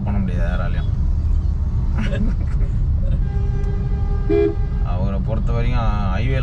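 A vehicle horn sounds once in traffic: a steady tone held for about a second and a half, midway through. Beneath it runs the low rumble of a car driving on the road, heard from inside the cabin.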